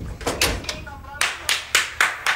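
A quick run of sharp hand slaps or claps, about four a second, with a brief voice sound about a second in.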